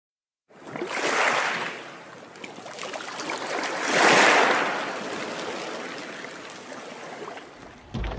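Logo-intro sound effect of rushing, surging water: two swells of water noise, the second and loudest about four seconds in as the logo appears, then a slow fade.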